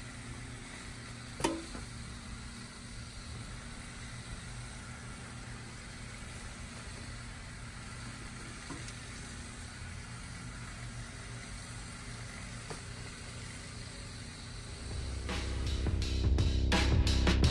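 Quiet steady outdoor background hiss with a few faint knocks of a spade working bed soil. Music fades in near the end.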